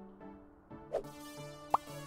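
Light background music with held notes, over which a cartoon pop sound effect plays twice: a soft short pop about a second in and a sharper, louder upward pop near the end.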